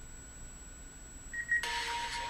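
Low background hum, then about 1.4 s in a brief high electronic beep, followed by a sudden, louder electronic tone over a hiss.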